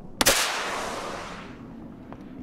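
A single sharp gunshot crack about a quarter-second in, followed by a long hissing tail that fades away over about a second.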